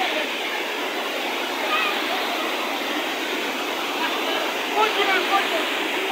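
Rushing water of a mountain stream cascading over rocks, a steady, unbroken rush.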